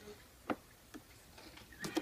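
A kitten's paws scratching and clicking on a plastic litter box and its pellet litter: a few short, sharp scrapes, the loudest about half a second in and another just before the end.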